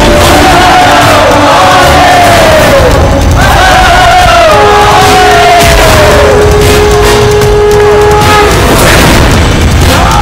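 Loud action-film background score with heavy booming hits and chanted vocal phrases that fall in pitch; one note is held steadily from about halfway to near the end.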